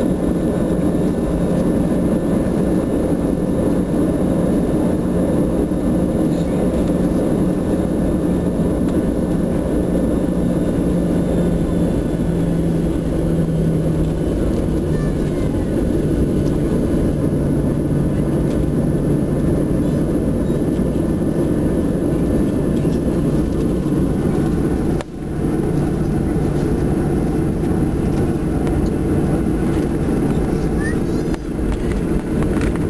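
Jet airliner cabin noise while taxiing: a steady low rumble of the engines at taxi power, with a steady hum that drops slightly in pitch about halfway through.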